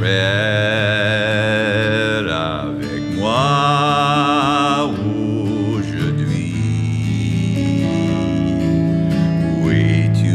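A man singing long, slowly drawn-out notes with a wavering vibrato, over acoustic guitar accompaniment.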